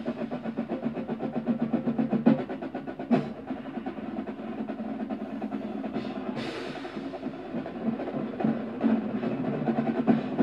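Recorded drum corps show music led by the drumline: fast, even snare and drum patterns with a cymbal crash about six seconds in.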